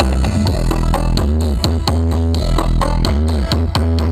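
Loud electronic dance music with heavy bass and a fast, steady beat, played through a truck-mounted stack of large loudspeaker cabinets. Arching synth sweeps repeat over the beat.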